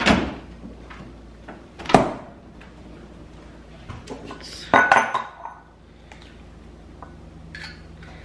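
Kitchen clatter: a few sharp knocks and clinks as containers and ceramic bowls are handled and set down on a stone countertop. The loudest come about two seconds in and around five seconds, the latter with a brief ring, and lighter clinks follow near the end.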